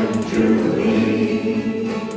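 Folk group singing together in harmony on held notes, over acoustic guitar and banjo accompaniment.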